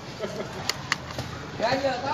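Two sharp plastic clicks close together in the middle, from the push-button punching arms of a toy two-player battle game being pressed, with quieter voices around them.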